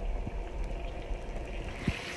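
Minced beef and tomato sauce bubbling at a boil in a frying pan, with a low rumble underneath, a couple of soft pops, and a hiss growing near the end.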